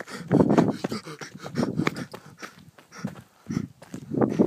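A man's wordless yells and heavy panting in short, repeated bursts close to the microphone, the loudest yell about half a second in.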